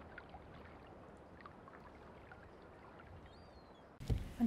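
Faint water rippling and lapping, a steady low wash with a few small clicks.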